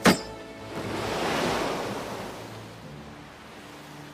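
A sword blade slashes through a taut rope with one sharp, loud crack, followed by a rush of surging sea water that swells for a second or two and then fades.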